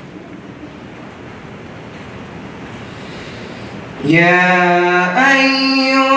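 A young man's melodic Quran recitation, sung-out Arabic with long held notes, resuming about four seconds in after a pause with only a faint steady hiss.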